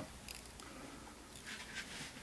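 Faint rustle of fingers handling the fly and hackle tip over quiet room tone, with a couple of soft brief scratches.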